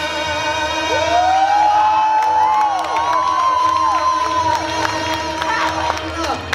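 A man singing unaccompanied, holding one long note for nearly six seconds until it stops near the end. The audience cheers and whoops over the note.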